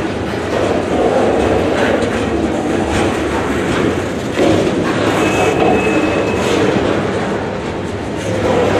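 Freight train of container-carrying flatcars rolling past close by: a steady rumble of steel wheels on rail with scattered clacks over the joints. A thin, high wheel squeal sounds for about a second past the middle.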